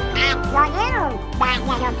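Donald Duck's quacking cartoon voice: three short squawky phrases that rise and fall in pitch, over orchestral score.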